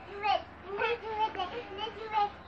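Young children's high-pitched voices chattering and calling out in short bursts while playing.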